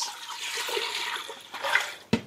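Water poured from a plastic measuring jug into a stainless steel stockpot, a steady splashing stream that thins out near the end.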